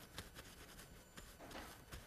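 Near silence in a lecture hall, with faint scattered rustling as hands are wiped with a towel.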